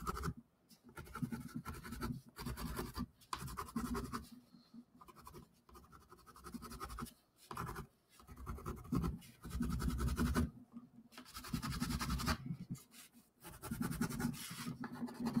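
Pencil scratching across cardboard in quick back-and-forth shading strokes, coming in irregular bursts with short pauses between them.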